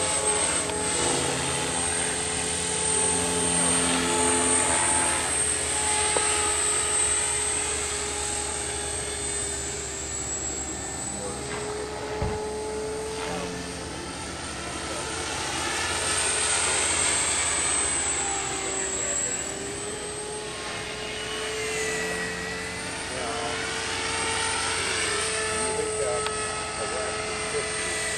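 Radio-controlled model helicopter flying: a steady whine of motor and rotor whose pitch slowly rises and falls as it manoeuvres.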